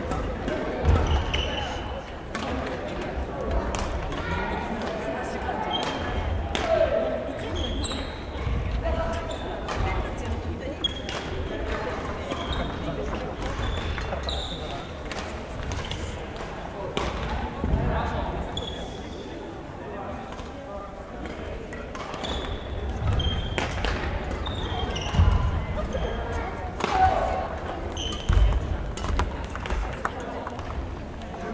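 Badminton doubles play on a wooden gym floor: sharp racket hits on the shuttlecock, shoes squeaking and thudding on the court, and a steady murmur of voices in a large hall.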